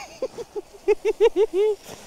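A man's voice singing a quick string of about seven short, high-pitched syllables, like a wordless "la-la" tune.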